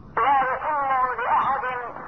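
A man's voice speaking Arabic over a telephone line, in drawn-out phrases whose pitch glides up and down. The sound is thin and narrow.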